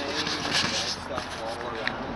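People talking, the words indistinct, with a few short clicks.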